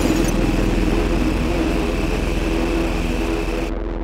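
The end of a pop song: a sustained, noisy closing sound with a steady high tone and a low hum, gradually fading. Its high part cuts off abruptly near the end.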